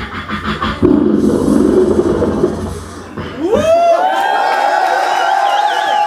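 Beatboxing into a microphone: a rhythmic pattern and a buzzing bass, then about three seconds in a voiced tone glides up and is held as one long note.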